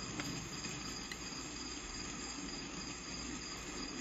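Quiet room tone: a steady low hum and hiss with faint, steady high-pitched tones underneath.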